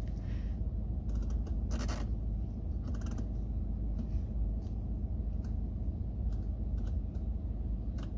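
BMW 5 Series F10 engine idling, a steady low rumble heard inside the cabin, with a few soft clicks as the iDrive controller is turned and pressed.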